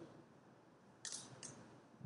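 Near silence: hall room tone in a pause of speech, broken by two brief faint hissing sounds a little past the middle.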